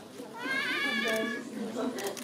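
A high-pitched, drawn-out excited cry, lasting about a second and rising slightly in pitch, from an audience member reacting to a seat number being called in a prize draw, over a murmur of other voices.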